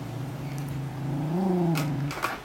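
Karelo-Finnish Laika growling low and steadily over the piece of hide it holds under its paw, the growl rising briefly in pitch about a second and a half in: a dog guarding its chew.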